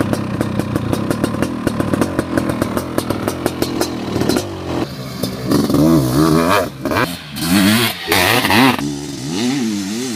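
Honda CR500's 500 cc single-cylinder two-stroke engine idling close by with an even popping beat, about six pops a second. About four and a half seconds in, it revs hard as the bike pulls away, its pitch climbing and dropping with the throttle, with loud hissing spells as the rear tyre throws sand.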